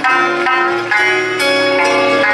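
Sanshin and acoustic guitar playing together, a plucked sanshin melody over guitar accompaniment, with new notes about twice a second and no singing.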